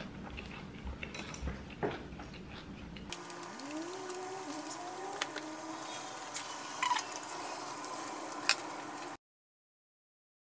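Table sounds of a meal being eaten: light clicks and taps of chopsticks and tongs against dishes and leaves being handled, with a few faint rising tones in the second half. The sound cuts off suddenly near the end.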